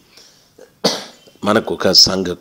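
A man coughs once, a sudden rough burst about a second in, after which his speech resumes.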